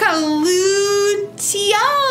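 A woman's voice drawing out a word in a sing-song way: one long held note for over a second, then a short rise and fall in pitch near the end.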